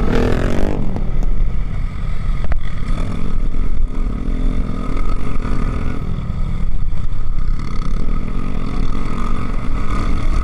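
Motorcycle engine running on the move, with heavy wind rumble on the microphone; the engine note drops in the first second, then runs steadily.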